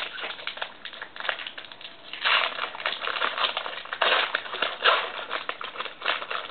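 Foil trading-card pack wrapper crinkling as it is torn open and handled, in several louder bursts, with cards rustling.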